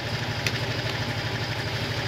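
A vehicle engine idling steadily, with an even low pulse.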